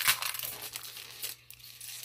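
Clear plastic sleeve crinkling as sticker sheets are handled and slid out of it. It is loudest in the first moment and dies down after about a second and a half.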